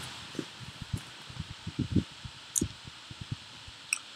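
Soft, irregular low knocks over faint hiss, with a sharp click near the end: a computer mouse being moved and clicked on a desk to open an email.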